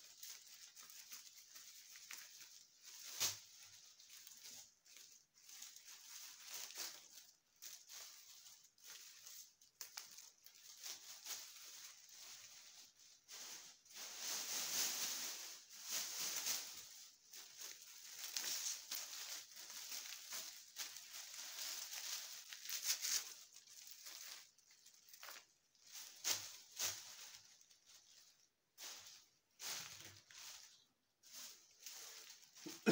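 Dried birch branches and their leaves rustling and crackling as they are handled and laid out in bunches, in uneven bursts, with a few sharper snaps along the way.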